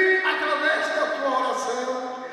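A man preaching into a hand-held microphone through the church's sound system.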